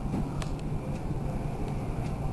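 A car running with a steady low rumble, with one faint click about half a second in.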